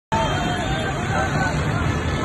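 A babble of many voices, some raised, over steady street traffic noise.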